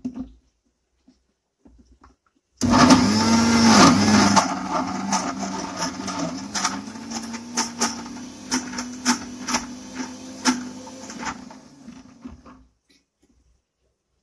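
Electric kitchen mixer grinder switched on about two and a half seconds in, grinding chutney ingredients for roughly nine seconds with a steady motor hum and irregular clatter from the jar. Loudest in the first couple of seconds; the motor then settles, and it is switched off and winds down.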